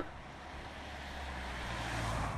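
A low rumbling whoosh with a deep hum that slowly swells louder, the kind of transition sound effect a TV broadcast lays under a cut between shots.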